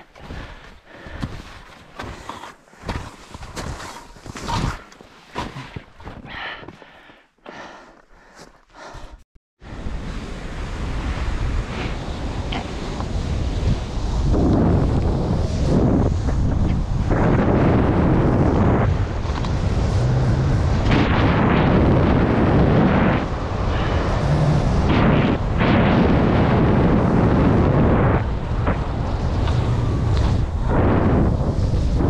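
Wind buffeting the microphone and skis running over snow on a fast downhill run, starting about a third of the way in, building for a few seconds, then staying loud with gusting swells. Before that, scattered short knocks and scuffs with quiet gaps.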